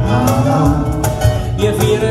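Live band music: acoustic and electric guitars over a bass guitar line, with regular percussion and cymbal hits.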